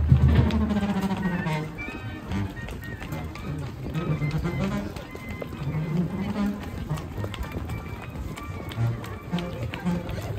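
Music and the voices of a crowd walking in a street procession: a loud, deep music passage stops just after the start, and people's chatter and quieter music go on after it.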